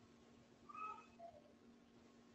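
A faint, short call that falls in pitch, heard once about a second in, over a low steady hum in near silence.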